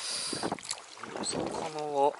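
Rustling and handling noise on clothing and gear in a small inflatable boat, starting suddenly, with a few light knocks. Near the end a man's voice holds one drawn-out syllable.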